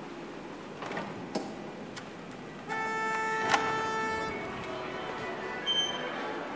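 A few sharp clicks and knocks as the old elevator's hinged door is handled, then a steady horn-like tone that lasts about a second and a half, with a sharp click in the middle of it.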